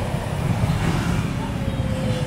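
Amusement park ambience: a steady low rumble with faint distant voices.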